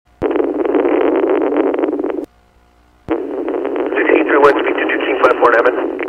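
Police radio traffic with the thin, narrow sound of a radio channel: a transmission keys up with a click and about two seconds of static hiss, then cuts off with a squelch click. After a short gap another transmission opens with hiss and an indistinct voice over it.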